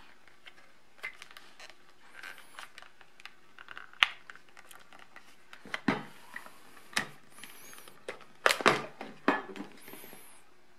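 Protective plastic covering being pulled off a handheld digital multimeter: scattered clicks and knocks of the cover and the meter's plastic case being handled, with a sharp click about four seconds in and a run of louder knocks near the end.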